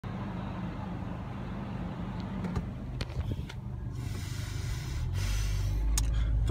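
A car engine idling steadily, a low hum heard from inside the car's cabin, with a few light clicks partway through and a brief hiss near the end.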